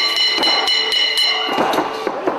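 Music with steady held high notes, cut through by several sharp knocks from a wrestler striking with a long stick.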